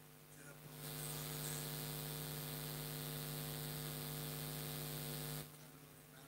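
Electrical mains hum with a loud, steady hiss that switches on about a second in and cuts off suddenly near the end, typical of a public-address sound system.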